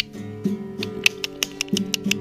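Acoustic guitar music playing, with held chords. There is a sharp click right at the start, and quick, sharp percussive clicks come several times a second in the second half.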